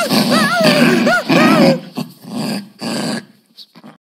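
Angry dogs growling and barking, with loud rising-and-falling cries in the first second and a half, then shorter separate bursts that fade out near the end.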